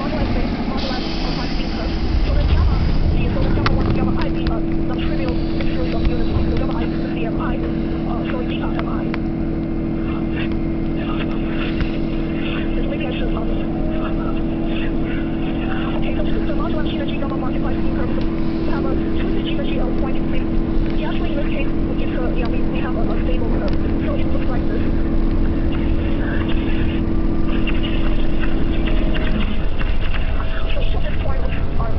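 Electric train pulling out of a station and picking up speed, heard from inside the car: a steady motor hum over a low rumble with many small clicks and rattles, and a faint rising whine near the end.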